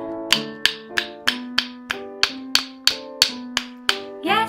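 Two wooden sticks struck together in a steady beat, about three sharp clicks a second, over backing music with sustained notes.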